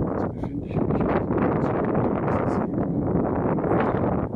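Wind buffeting the camera's microphone: a steady, loud low rumble without a break.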